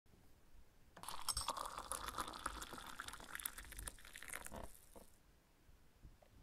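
Liquid being poured into a cup: a crackly, splashing trickle that starts about a second in and dies away about a second before the end.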